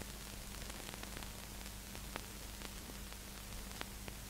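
Faint hiss with a steady low mains hum and scattered faint clicks: the background noise of an old archival soundtrack between segments.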